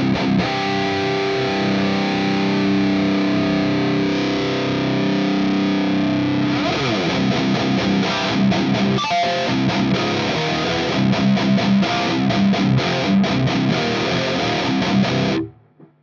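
High-gain distorted electric guitar in drop C, through a capture of a Revv Generator 120 amp and a simulated Mega 4x12 Djent V30 cabinet miked by a soloed dynamic 57, with the top end cut off sharply. A held chord rings for about six seconds, then a fast riff of short, choppy notes that stops just before the end.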